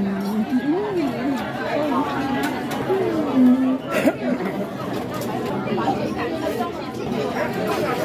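Indistinct chatter of many diners talking at once in a busy restaurant dining room, with a nearby voice standing out now and then, and a single sharp click about four seconds in.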